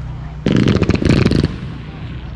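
Aerial fireworks going off: a dense run of rapid, sharp cracks starting about half a second in and lasting about a second.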